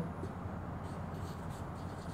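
Marker pen writing on a whiteboard: faint rubbing strokes over a low, steady room hum.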